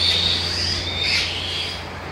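Young black-winged kite chicks calling continuously with high, thin, wavering cries that ease off near the end. These are hungry begging calls just before a feed.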